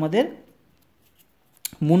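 A voice talking, breaking off shortly after the start for a quiet pause of about a second. Near the end there is a single sharp click, and then the speech resumes.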